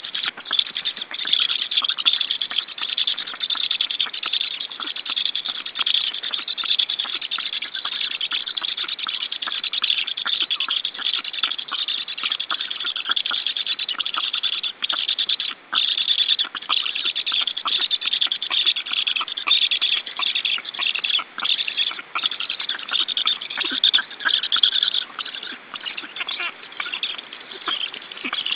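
Black stork nestlings giving their food-begging call, a continuous fast rasping chatter, as a parent brings fish to the nest. It breaks off briefly twice about halfway through.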